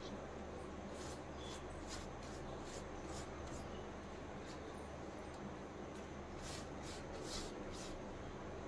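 Soft, irregular rubbing and smearing strokes of a hand spreading batter over layered colocasia leaves and scooping it from a steel bowl, a little more frequent near the end, over a faint steady low hum.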